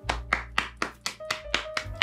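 One person clapping hands, a quick run of about four to five claps a second.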